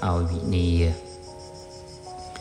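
A man's voice chanting Khmer Buddhist verse in long held notes for about the first second, then soft background music of sustained tones alone.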